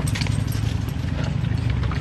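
Used outboard lower-unit gear oil poured from a plastic drain pan through a plastic funnel, with light irregular clicks and knocks of plastic, over a steady low rumble.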